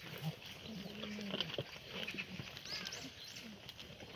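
Korean black goats feeding on a pile of vines and greens: scattered rustling and crunching, with one low, drawn-out bleat about a second in.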